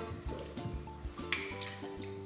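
Quiet background music, with a metal spoon clinking against a small glass baby-food jar about a second and a half in.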